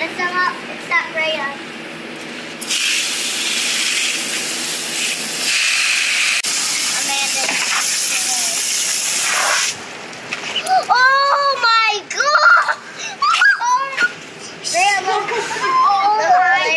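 Garden hose spray nozzle hissing steadily for about seven seconds as it rinses wet gravel on a mesh sifting screen, cutting off suddenly, followed by excited high-pitched children's voices.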